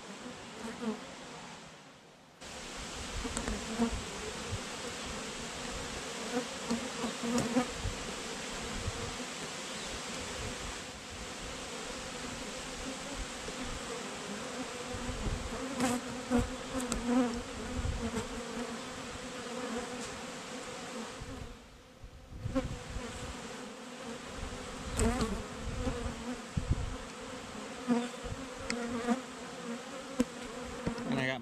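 A honeybee colony buzzing around an open hive: a steady hum of many bees that drops away briefly twice, with low rumbles underneath.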